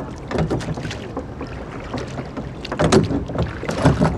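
Rowing boat under oars: wooden oars knocking in their metal rowlocks and working the water, with two louder knocks in the second half, over a low rumble of wind on the microphone.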